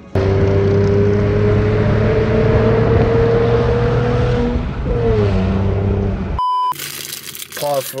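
Loud car engine noise whose pitch rises slowly for about four seconds, as when revving or accelerating, then cuts off abruptly after about six seconds. A short high beep follows.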